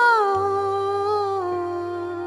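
A woman humming a long held note into a microphone, which slides down in pitch early on and then holds lower. A low sustained note from the accompaniment comes in underneath about a third of a second in.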